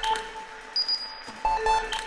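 Sparse contemporary chamber-ensemble music with piano: a quick cluster of short repeated notes on one pitch about one and a half seconds in, with a thin high held tone about a second in.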